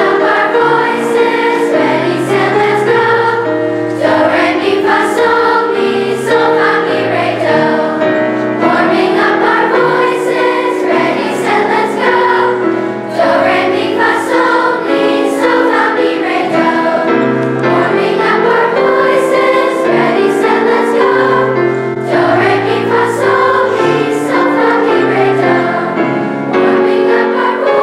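A children's chorus singing vocal warm-up exercises with keyboard piano accompaniment, in short phrases that repeat about every four seconds.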